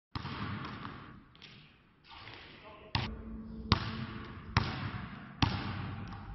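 Basketball dribbled on an indoor gym floor. Four sharp bounces come about a second apart in the second half, each with a short echo in the hall.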